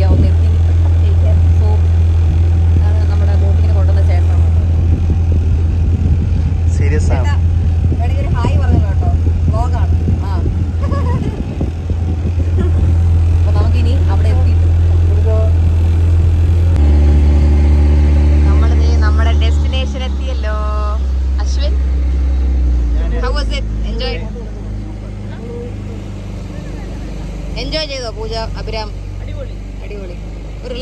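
Motorboat engine running with a strong, steady low drone under talking; its pitch drops about two-thirds of the way through and it grows quieter soon after.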